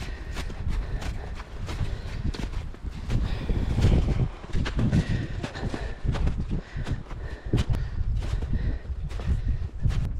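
Hiking boots crunching and kicking steps into firm, suncupped snow, with trekking poles planted alongside, in an irregular run of footfalls over a low, uneven rumble.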